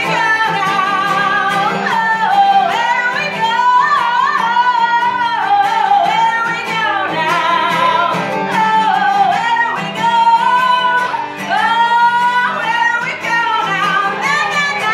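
Female lead vocalist singing a sustained melody with vibrato over a live acoustic band: strummed acoustic guitar, violins and accordion.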